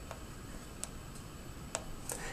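Pushbuttons on a PMA450A aircraft audio panel clicking as they are pressed, two sharp clicks about a second apart, over a faint steady high-pitched whine.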